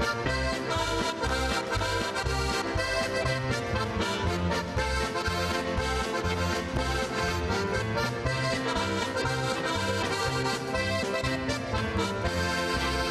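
Button box (diatonic button accordion) playing a polka dance tune, backed by a band with a steady bass beat.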